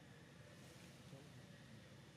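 Near silence: faint, steady outdoor background hiss with a low rumble.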